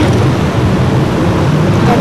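Steady, loud low rumbling background noise with no clear event in it.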